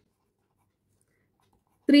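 Near silence, then a voice begins speaking just at the end.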